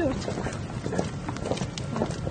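Footsteps of several people in hard-soled shoes walking on stone paving, an irregular patter of clicks, with voices murmuring among them.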